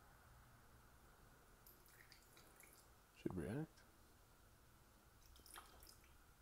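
Near silence: faint room tone with a few light clicks, and one short wordless vocal sound about halfway through.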